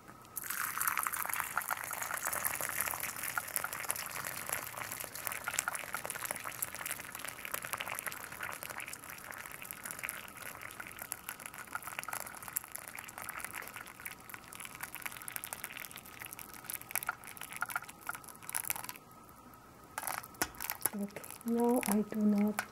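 Hot water poured in a steady stream from a kettle into the glass infuser of a glass teapot. The pour stops about nineteen seconds in and resumes briefly a second later.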